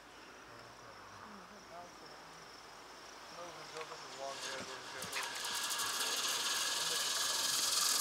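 Zipline trolley pulley rolling down the cable, a hiss that starts about halfway through and grows steadily louder as the rider picks up speed, with a few clicks around five seconds in. Faint voices early on.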